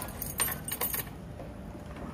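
A bunch of keys jangling, with several sharp metallic clinks in the first second, then settling.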